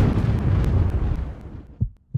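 A boom sound effect: a sudden loud hit with a deep rumble that dies away over about two seconds, followed by two short low thumps near the end.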